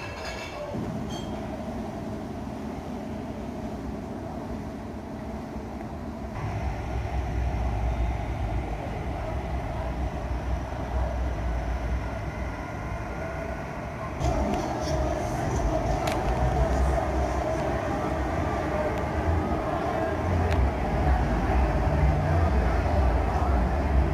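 Low, steady rumble of outdoor city street noise. It grows louder about six seconds in and again about fourteen seconds in, with a few faint clicks.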